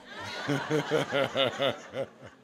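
A man laughing: a run of about six short, evenly spaced "ha" pulses lasting about a second and a half.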